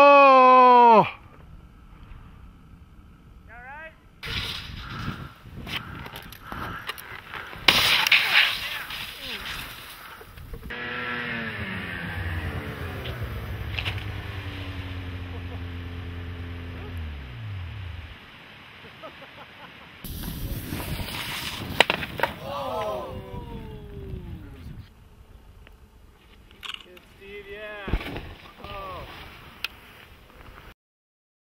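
Shouts and exclamations on snow-sports crash footage: a loud yell in the first second, more short shouts past the middle and near the end. In between there is outdoor noise and a long pitched sound that slides down in steps and stops about two-thirds of the way through.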